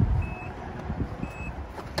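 Short high electronic beeps from the 2012 Nissan Murano, two of them about a second apart, just after its power tailgate has shut, over a low rumble.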